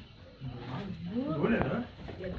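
A person speaking, the voice rising and falling, starting about half a second in; no other clear sound.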